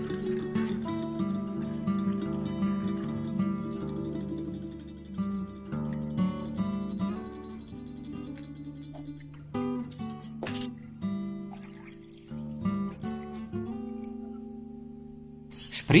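Soft background instrumental music with plucked-string notes, with a few brief clicks about ten seconds in.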